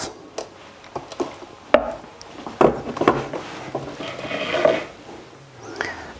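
Scattered wooden knocks, clicks and rubbing as the hinged wooden shelf of a homemade dubbing-brush spinning machine is handled and dropped clear of the waxed wire and its laid-out fibres. The busiest clatter comes a little before the middle.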